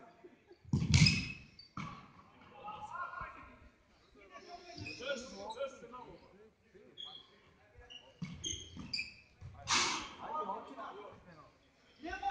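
Futsal players shouting and calling to each other in an echoing sports hall, with two loud shouts, about a second in and near the end, and the ball being kicked on the hard court.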